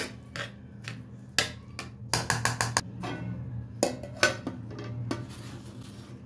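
Metal spoon scraping and clicking against a metal pot while mixing raw meat, in irregular strokes with a quick run of about five near the middle.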